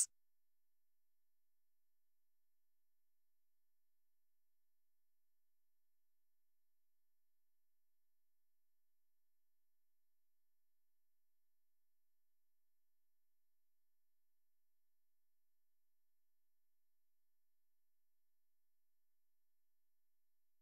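Near silence: the audio track is blank, with not even room tone.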